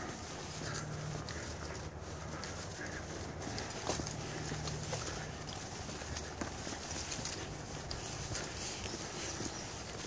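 Footsteps of a person walking briskly on a dirt hiking trail, a steady run of soft footfalls.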